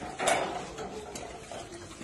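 Quiet shuffling footsteps and light clinks of several people walking on a concrete floor, with one short scuff about a quarter second in.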